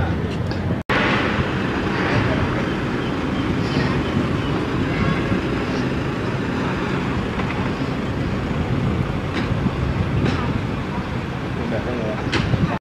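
Outdoor background noise: indistinct talking from people standing around, mixed with vehicle and traffic noise. There is a split-second dropout about a second in.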